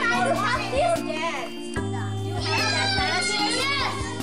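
Young children's voices chattering over background music with sustained low notes.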